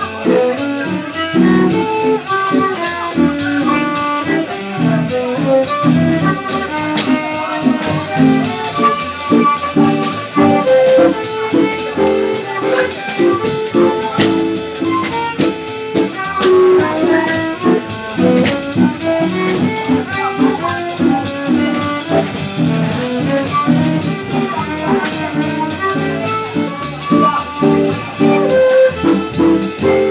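Violin playing a fast jazz line live with a small band, the drum kit keeping time with steady cymbal strokes underneath.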